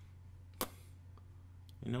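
A low steady hum with one sharp click about half a second in, followed by a fainter tick; a man starts speaking near the end.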